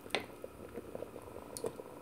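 Wooden spoon stirring a thick chickpea and tripe stew in tomato sauce in a metal pot: faint wet squishing with a couple of soft knocks, one just after the start and one near the end.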